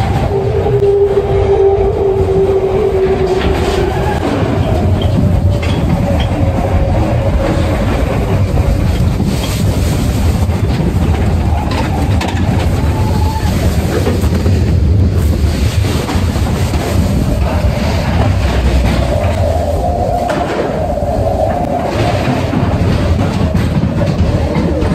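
Matterhorn Bobsleds coaster car running along its tubular steel track, a loud continuous rumble. A steady higher whine rides over it for the first few seconds and again briefly near the end.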